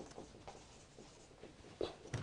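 Marker pen writing on a whiteboard: faint, scattered scratching strokes, with one short louder sound near the end.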